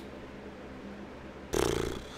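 Quiet room tone with a faint steady hum. About one and a half seconds in, a short rough burst of noise lasts about half a second and fades out.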